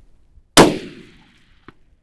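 A single loud rifle shot about half a second in, its report ringing away over about half a second, followed about a second later by a short sharp click. Faint low heartbeat thumps, picked up by a chest-worn microphone, come before the shot.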